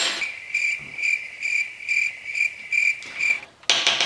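Cricket chirping sound effect, a high, steady chirp pulsing about three times a second that stops abruptly after about three seconds. It is the comic 'crickets' cue for an awkward silence. A short noisy burst follows near the end.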